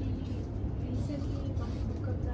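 A faint, distant voice from someone in the room answering a question off-mic, over a steady low room hum.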